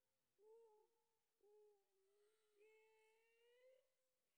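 Near silence, with only a very faint wavering tone.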